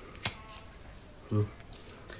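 A single sharp click of a lighter being struck to light a firecracker fuse that won't catch.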